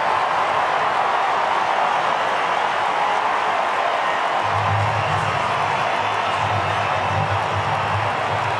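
Large stadium crowd cheering steadily after a goal. About halfway through, a low, pulsing beat joins in, like music over the stadium PA.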